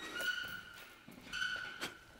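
Two high, steady squeaks about half a second long each, a second or so apart, followed by a light tap near the end. They come from a sideways slipping drill against a swinging maize bag.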